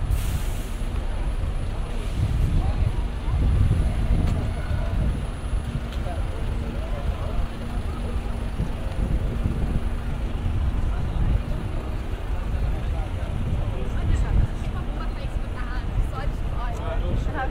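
Busy city-street ambience: a steady low rumble of traffic engines with passers-by talking, and a short hiss right at the start.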